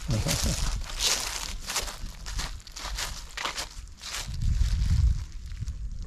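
Footsteps crunching through dry leaves and grass, an irregular run of crackling steps, with a loud low rumble on the microphone about four and a half seconds in.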